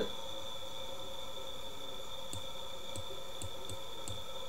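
A steady high-pitched electrical whine over a faint hum, with a few faint short clicks in the second half.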